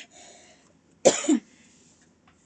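A person coughs once, sharply, about a second in.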